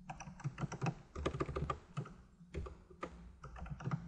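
Typing on a computer keyboard: an irregular run of keystrokes with a few short pauses.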